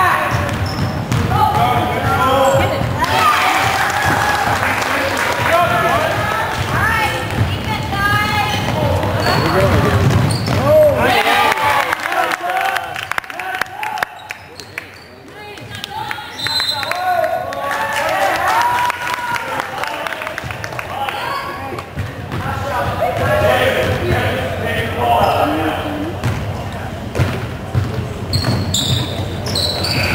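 Basketball game sounds on a hardwood gym floor: a ball bouncing, with indistinct shouts and voices of players and onlookers throughout, quieter for a few seconds near the middle.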